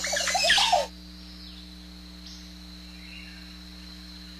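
A dense burst of chirping jungle bird calls that lasts about a second, followed by a faint steady hum.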